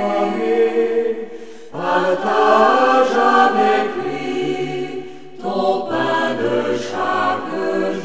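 Choir singing a French sacred song in phrases. The sound dips briefly and the voices come back in together a little under two seconds in and again about five and a half seconds in, with a lower part joining around four seconds.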